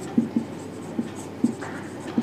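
Marker pen writing on a whiteboard: a series of short strokes and taps of the felt tip on the board.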